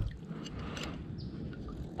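Quiet outdoor background from a kayak on a river: a faint, steady low noise with no distinct event.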